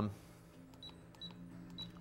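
Three short, high-pitched key beeps from a Furuno FAR-2xx7 radar's control panel as its keys are pressed, with faint key clicks between them.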